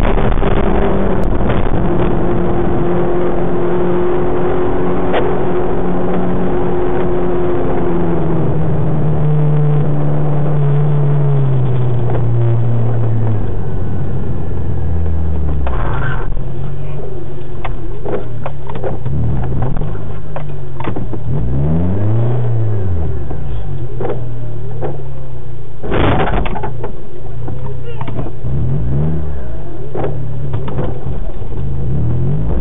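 Car engine heard from inside the cabin through a dashcam microphone, its pitch sliding down as the car slows, then rising and falling in quick swells of revs. Two short loud bursts of noise stand out, about halfway through and again a few seconds before the end.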